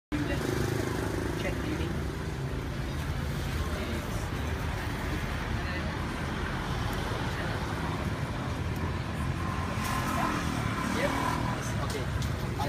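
Street traffic noise: a steady low engine rumble from vehicles on the road, with indistinct voices nearby.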